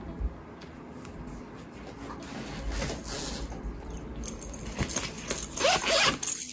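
Faint rustling and small clicks of plastic pocket pages being handled in a ring binder, getting busier in the last couple of seconds.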